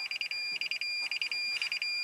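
A 2020 Toyota Tundra's parking-aid warning is beeping inside the cab: short bursts of rapid high beeps, about two bursts a second, over a steady high tone. The rear sensors are detecting close obstacles, which shows they are working again.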